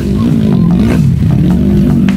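Underbone trail motorcycle's small engine revving up and down as the rider works the throttle through deep mud ruts, with music playing over it.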